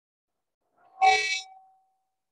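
A sudden, loud, horn-like blare with several pitches about a second in, lasting about half a second, one tone ringing on briefly as it fades.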